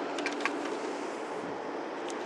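Steady outdoor background noise, an even hiss with a faint low hum through the first part and a few faint ticks early on.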